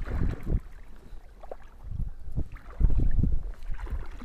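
Wind buffeting the microphone outdoors: irregular low rumbling gusts, loudest near the end.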